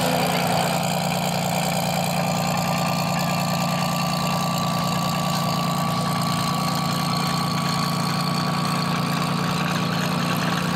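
Drag-race car engines idling at the starting line: a steady, even idle with a thin whine held above it.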